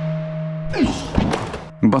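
A held, fading musical tone, then about two-thirds of the way in a sudden thud of a forearm block meeting a punching arm in karate practice, with a man's short voice right after it.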